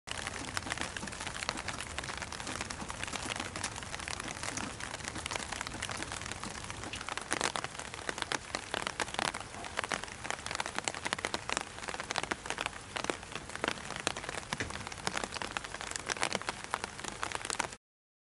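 Steady rain pattering, with many sharp drip ticks that come thicker about halfway through; it starts and cuts off abruptly.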